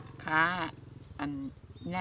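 Speech: a woman talking in short Thai phrases, with a long drawn-out syllable near the start and no cleaver strokes in between.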